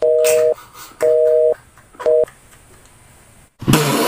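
Telephone busy tone heard on the call: a steady two-note beep sounding three times, about half a second on and half a second off, the third cut short. This is the sign that the other side has hung up. A loud burst of noise starts near the end.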